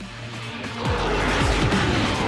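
Dramatic TV soundtrack of music and sound effects: a low hum gives way to a swelling rumble with several falling, swooping tones, growing louder about a second in.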